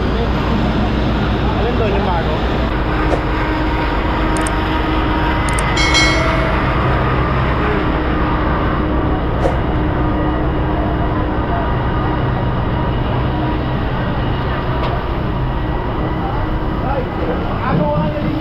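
Fire-engine pumps running steadily, feeding charged hoses, under the talk and shouts of firefighters and onlookers. A few sharp clicks and one brief high tone about six seconds in.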